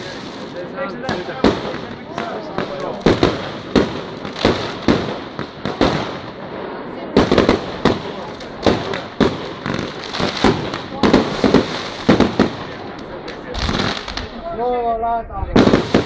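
Fireworks display: aerial shells bursting in an irregular run of sharp bangs, several close together at times, over a constant crackling hiss from the burning stars.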